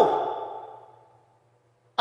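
A man's emphatic spoken "No" fading away over about a second, with a lingering ring from the room or sound system, then near silence.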